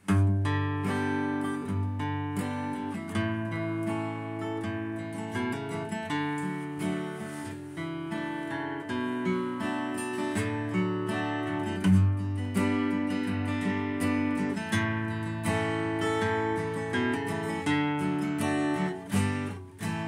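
Acoustic guitar strummed, with chords and moving bass notes: the instrumental introduction to a country gospel song.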